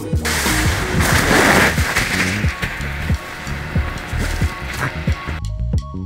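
Background music with a steady beat. Over it, a loud hiss of a cardboard box sliding down packed snow, which cuts off abruptly about five seconds in.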